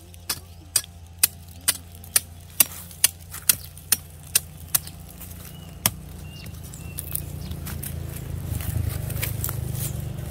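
Machete blade knocking against a tough, dry ô môi (pink shower tree) pod to cut it open, sharp metallic knocks about two a second for the first half, then one more. A low rumble builds in the second half.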